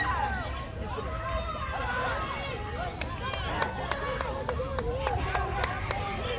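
Several spectators' voices talking and calling out over one another, with sharp taps or claps roughly twice a second in the second half.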